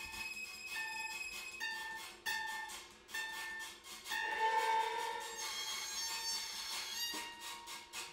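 Acoustic guitars played with bows, sounding high held tones: a short note repeated about once a second for the first few seconds, then a louder, longer sustained tone from about four seconds in.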